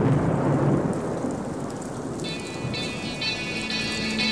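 A steady rushing noise like rain or wind, with no tune in it. About two seconds in, music starts with a high, rhythmic repeated chord.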